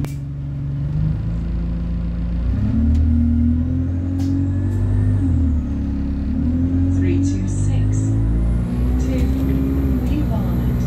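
Diesel bus engine and gearbox heard from inside the passenger saloon as the bus pulls away and accelerates, a low drone that steps up and down in pitch several times with the gear changes.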